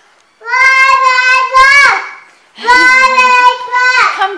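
A toddler's high voice singing two long held notes without words, each about a second and a half long; the first bends upward at its end.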